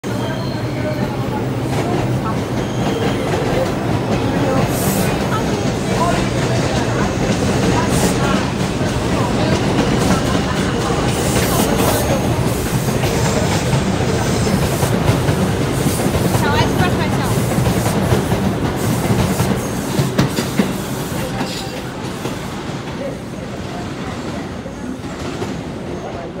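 A New York City Subway 2 train of R142 cars departing an elevated station: a loud, steady rail rumble with a low electric motor hum and scattered clacks of the wheels over the rail joints, fading over the last few seconds as the train leaves.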